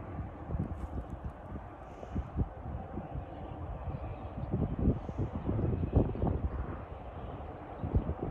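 Wind buffeting the microphone outdoors: a low, uneven rumble with irregular gusty thumps.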